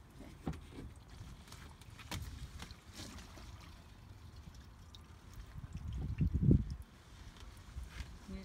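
Leftover waste water sloshing and gurgling through a corrugated RV sewer hose as it is handled and lifted to drain it, with a few knocks from the hose and a louder low rush of water about six seconds in.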